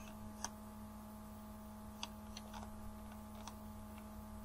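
Steady low electrical hum with about five faint, short computer mouse clicks scattered through.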